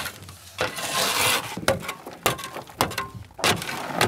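Miner's hand tool scraping and striking rock while digging cobalt ore by hand: a rasping scrape about a second in, then several sharp, irregular knocks.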